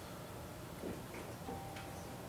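Quiet room tone in a pause, with a few faint, irregular ticks.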